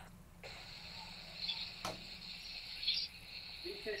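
Faint steady high hiss over a phone video-call line, cutting out for a moment at the start, with a single sharp click about two seconds in.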